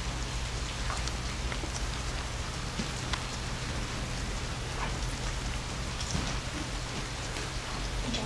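Small wood campfire crackling: a steady hiss with scattered sharp little pops.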